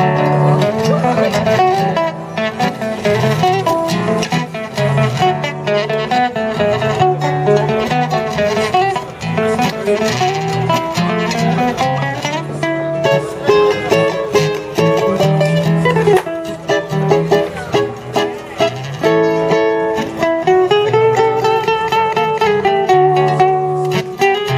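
Acoustic guitar playing a tango, a plucked melody over a moving bass line.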